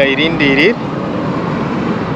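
A man's voice for under a second, then a steady rush of road traffic noise.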